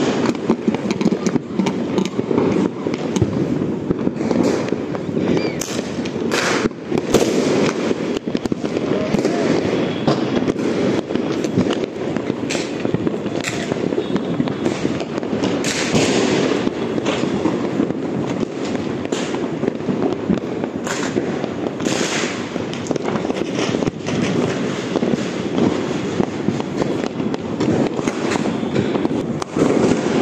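Diwali firecrackers and fireworks going off all around without pause: a dense, continuous crackle of many small bangs, with louder single blasts now and then.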